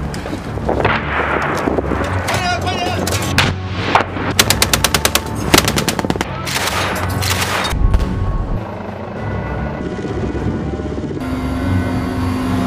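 Automatic small-arms fire from machine guns and assault rifles: a rapid burst of about ten shots a second around four seconds in, followed by more bursts, with shouted voices before the firing.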